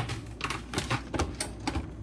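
Shop packaging and bags being rummaged through and handled: an irregular run of sharp plastic clicks and crinkles, several a second.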